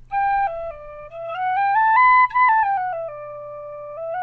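Generation Shush tin whistle, a low-volume practice whistle, playing a short tune. The notes step up to a high point about two seconds in, fall back to a held lower note, then a new phrase starts rising near the end. Its tone is a little altered, as if something were partly blocking the breath.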